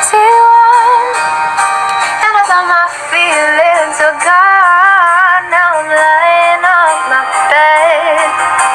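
A woman singing, her long held notes wavering and sliding in pitch.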